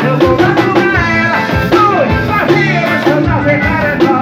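A live band playing upbeat music: accordion, electric bass and drum kit, with a singing voice over them.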